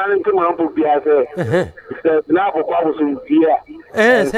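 Speech: a person talking, with the narrow, thin sound of a telephone line.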